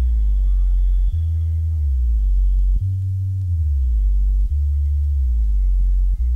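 An old-skool hardcore rave track in a drumless breakdown. A deep sine-like bass synth holds long notes that change about every second and a half, several of them sliding down in pitch.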